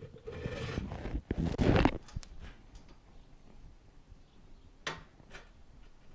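Steel swing-arm pivot bolt sliding and scraping out through the motorcycle frame's pivot for about two seconds, followed by quieter handling with a couple of light metal clicks near the end.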